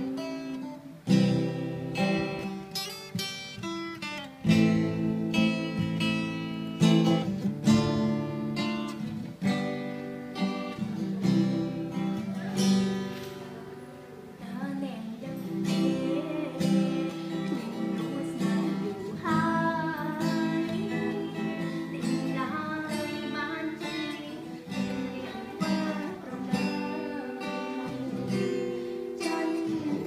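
Acoustic guitar strummed in a steady rhythm, chord after chord, playing a song.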